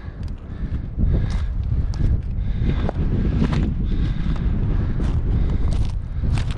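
Wind buffeting the microphone in a gusty, low rumble, with scattered light clicks and knocks.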